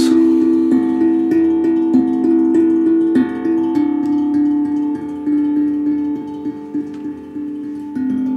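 Steel tongue drum struck with mallets, rocking between two low notes that ring on into each other, a new stroke about every half second, growing quieter near the end.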